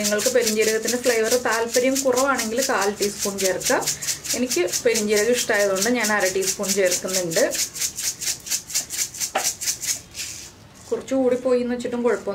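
A hand-twisted spice grinder grinding seeds over a bowl. It gives a rapid, even ratcheting rattle of many clicks a second, which stops about ten seconds in.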